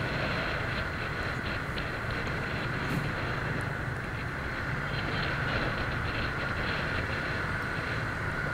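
Steady, even rumble of dense motorbike traffic, heard from a moving bike: engines and road noise blended into one constant din.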